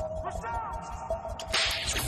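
Electrical sparks crackling and hissing. The sound starts suddenly and loudly about three-quarters of the way in and keeps going, over a low, steady music drone.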